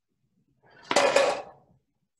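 A marble rolling off a ruler ramp strikes a plastic cup and shoves it skidding across a wooden table, with two sharp knocks in quick succession about a second in.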